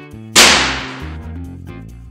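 Timberk Black Pearl electric convector dropped flat onto the floor with its glass front panel face down: one loud smack about half a second in, with a short ring-out. The glass panel survives the drop unbroken. Background music plays throughout.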